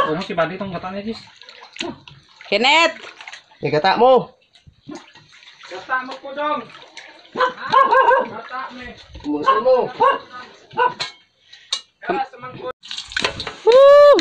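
Indistinct voices, with water sloshing as pieces of meat are washed by hand in a basin.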